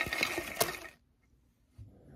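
A deck of tarot cards being shuffled by hand: a rapid papery rattle of many small card clicks that stops suddenly about a second in.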